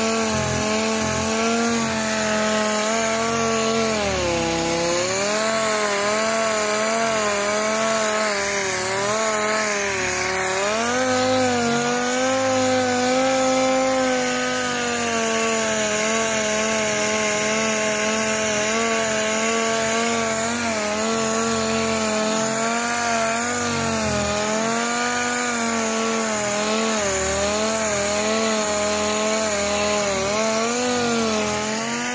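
Palm orbital sander running against a car's painted body panel, its motor whine dipping and rising as it is pressed and moved, over a steady rubbing hiss of the pad on the paint. It is scuffing the paint dull as prep before custom graphics are painted on.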